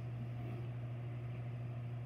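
Steady low hum with a faint hiss of room noise, unchanging throughout.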